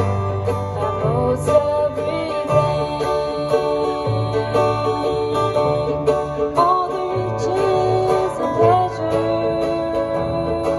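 Acoustic country band playing live: a fiddle carrying a melody with sliding notes over strummed acoustic guitar and an upright bass walking through steady low notes.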